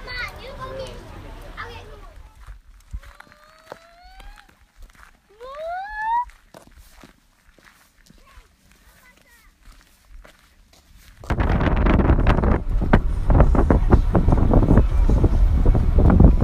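Children's voices at first, then two short rising calls a few seconds in, then from about eleven seconds in loud wind buffeting the microphone.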